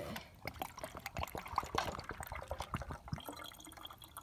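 Water draining from a Keurig coffee maker's reservoir down into the brewer, a quick irregular run of gurgles and drips.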